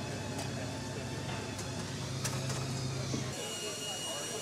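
Busy hangar background: a steady low hum with faint voices and a few light clicks. The hum cuts off abruptly near the end.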